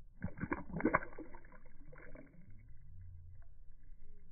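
Water splashing as a released crappie drops from a hand into the water and swims off: a quick cluster of splashes in the first second, loudest about a second in, and a weaker splash about two seconds in.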